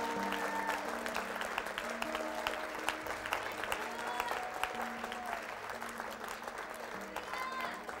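Scattered hand clapping from a congregation over soft worship music of held, slowly changing chords.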